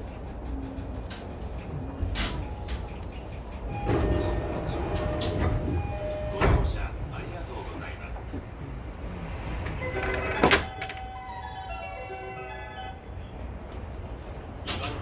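Sounds of a commuter train standing at a station platform: low running hum from the train, scattered clicks, and short held chime tones with a voice. A loud clunk comes about ten and a half seconds in, followed by a quick run of stepped, falling chime tones.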